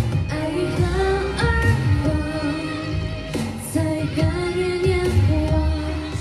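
A woman singing a Mandarin pop song into a handheld microphone over a backing track, holding long notes above a steady bass line.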